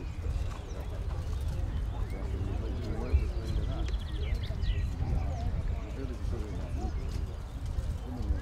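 Indistinct voices talking over a steady low rumble, with the soft hoofbeats of a horse working on a sand arena and birds chirping now and then.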